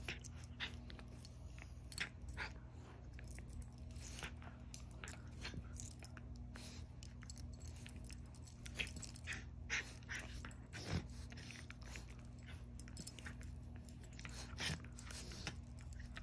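A Scottish terrier puppy and a West Highland white terrier play-fighting on a bed: scattered soft snaps, mouthing and bedding rustles, with a short low growl about eleven seconds in.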